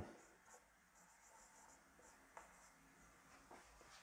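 Faint squeaks and light taps of a marker pen writing on a whiteboard, a few short strokes.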